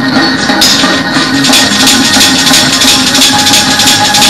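Loud, up-tempo gospel praise-break music with a fast beat and a tambourine jingling. The jingling drops out briefly at the start and comes back about half a second in.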